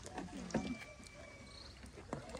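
Low background ambience with faint voices in the distance.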